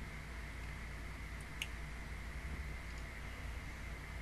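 Quiet room tone: steady microphone hiss and low hum, with one short click about one and a half seconds in.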